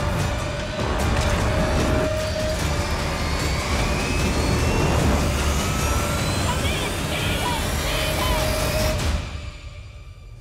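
Loud, dense trailer score with sound effects layered over it, including a held tone and several rising whines. It cuts off suddenly about nine seconds in, leaving a much quieter hum.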